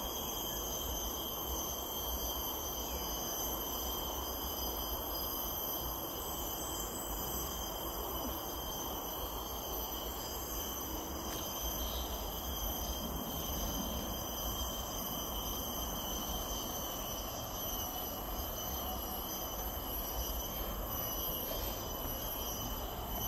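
A steady insect chorus in tropical forest: several constant high-pitched tones held without a break, over a low rumble.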